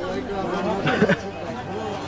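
Only speech: people talking, with voices overlapping in a chatter.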